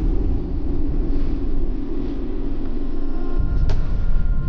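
Low, steady rumbling drone of a suspense soundtrack, with a sharp hit near the end.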